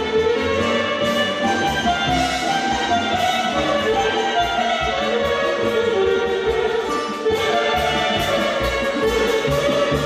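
Live band music in a traditional style, with a violin playing the melody over a steady beat.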